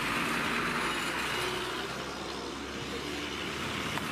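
Truck engines running close by on a road: a steady low rumble under an even wash of road and street noise.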